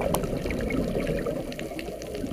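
Underwater reef ambience: a steady low rush with scattered faint clicks, and one sharper click just after the start.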